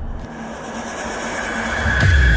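A noisy sound-design riser for a logo intro, with a faint high ringing tone. It grows steadily louder toward the end.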